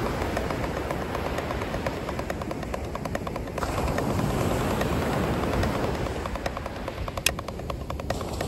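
Wooden drumsticks tapping a rubber practice pad in even sixteenth notes, playing a paradiddle and an inverted paradiddle back to back (right, left, right, right, left, right, right, left). The taps run over a steady rumble of wind on the microphone and surf.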